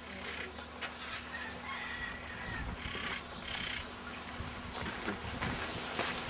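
Faint bird calls: short chirps and squawks over a low steady hum.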